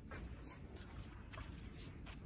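Faint, quiet indoor room tone with a low rumble and a few soft taps and rustles, typical of walking on carpet while holding a phone camera.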